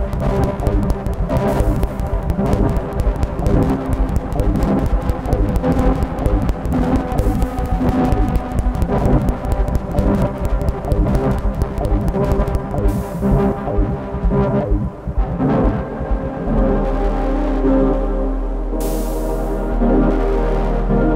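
Live improvised electronic music from a modular synthesizer setup: layered sustained tones over a fast, dense low pulsing. About sixteen seconds in, the pulsing stops and a steady low drone with held tones remains.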